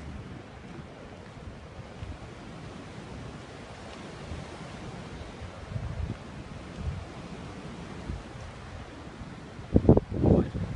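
Wind buffeting the microphone: a steady hiss with uneven low rumbling gusts. There is a brief loud burst just before the end.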